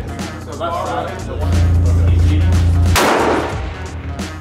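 A single rifle shot about three seconds in, a sharp crack with a short ringing tail. Background music with a heavy bass note runs under it.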